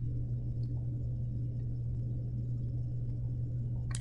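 Steady low background hum with no speech, the same hum that runs under the lecturer's voice.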